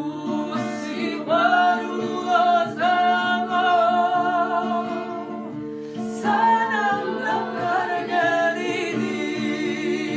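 Several women singing a Georgian song together to an acoustic guitar played with the fingers and strummed. There are two long sung phrases, the first starting about a second in and the second just after the middle.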